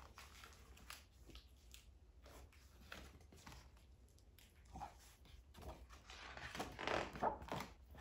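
Faint rustling and soft taps of paper as a page of a hardcover picture book is turned and pressed open, busiest near the end.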